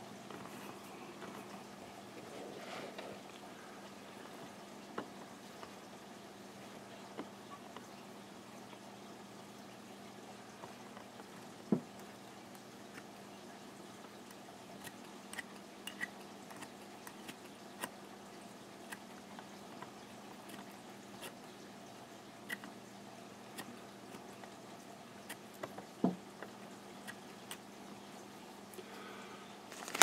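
Scissors trimming deer-hair dubbing on a fly in a vise: scattered soft snips and clicks at irregular intervals, a couple standing out louder, over a low steady hum.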